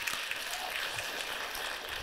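Studio audience applauding, a steady and fairly quiet patter of many hands clapping.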